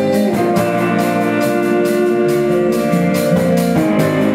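Live rock band playing: electric guitars and bass holding sustained chords over a drum kit keeping a steady beat, with chord changes about half a second in and again near the end.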